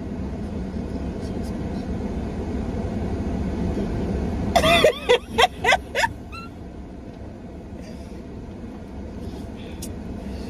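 Steady low hum of a car running, heard inside the cabin, with a burst of loud laughter from two people about halfway through.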